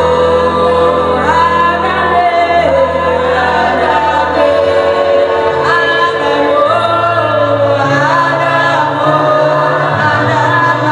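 Gospel song: a choir singing over held bass notes that step to a new pitch every second or two.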